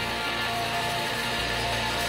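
Live rock band's electric and acoustic guitars playing the song's instrumental outro: a steady, dense wall of sustained, distorted guitar sound with no singing.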